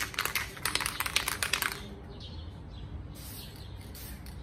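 Quick, irregular crackling and clicking for about the first two seconds as a spray can of Krylon matte finisher and a newspaper-wrapped sneaker are handled, then a couple of short, quieter spray hisses.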